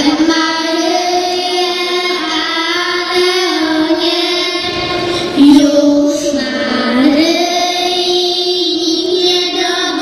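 Young girls singing a Polish Christmas carol together into microphones, a slow melody with long held notes sliding from one pitch to the next.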